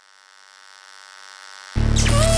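An electrical hum sound effect, a dense buzz of many steady tones, swelling steadily louder. Near the end it is cut off by a sudden loud hit with deep bass as the music comes in.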